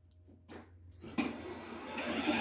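Electric ride-on toy car's motor and gearbox starting up just over a second in, then running with a steady whir as it drives across the carpet.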